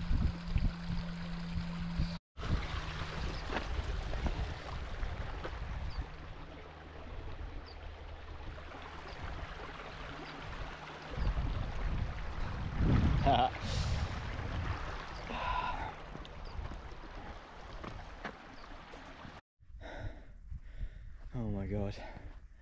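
A runner's heavy breathing and gasps on a steep uphill climb, over a stream trickling and a low rumble on the microphone.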